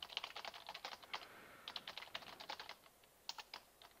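Computer keyboard typing: quick runs of keystrokes with short pauses between them, fairly faint.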